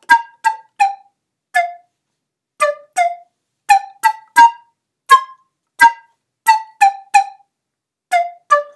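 A flute-type wind instrument playing a tune in short, detached notes, each starting sharply and dying away quickly, with a pause about two seconds in. The notes are played with too little breath.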